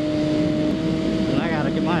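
Triumph Daytona 675's three-cylinder engine holding one steady note at highway cruising speed, with wind noise underneath.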